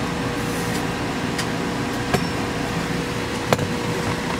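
Steady background noise with a faint, even hum, broken by a few light clicks; the sharpest click comes about three and a half seconds in.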